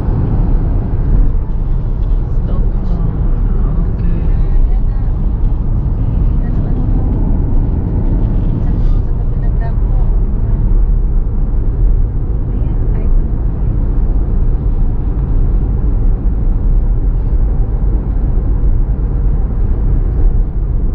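Cabin noise in a car driving at highway speed: a steady low rumble of tyres on the road and the engine.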